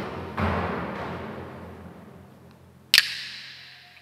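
A single slow beat on a large drum rings out and dies away, followed about three seconds in by one sharp clack of wooden clappers.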